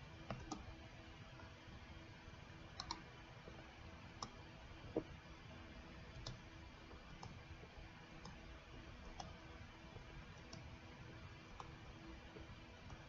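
Faint computer mouse clicks and spacebar key presses, about a dozen scattered clicks at irregular intervals, one of them doubled about three seconds in. Under them runs a faint steady hum of room tone.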